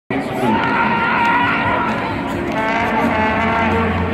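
A football team's warm-up rally chant: many men's voices shouting together in long, drawn-out calls that overlap one another, with a fresh round of held shouts joining about two and a half seconds in.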